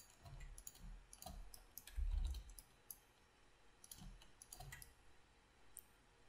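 Faint computer mouse clicks, a dozen or so at irregular spacing, with a low thump about two seconds in.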